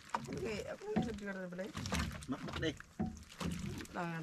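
People talking, their words not clearly made out, over a low steady hum.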